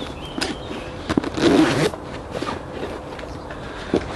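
Zip being run along to join two PLCE rucksack side pouches together: a few small clicks, then one loud zipping pull lasting about half a second, around a second and a half in.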